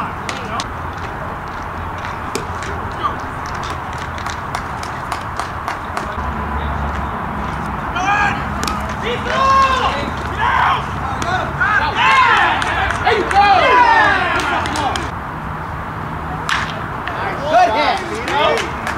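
Voices shouting and calling out across a baseball field, the calls loudest from about eight to fifteen seconds in, over a steady outdoor background with scattered sharp clicks.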